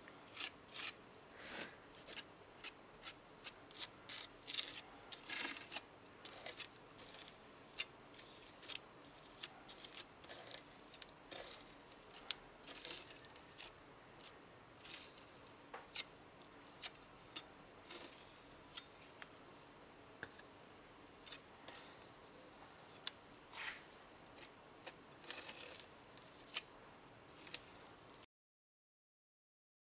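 Metal palette knife scraping gritty fibre paste across a stencil on paper: faint, short, irregular scrapes, close together over the first few seconds and more spaced out after.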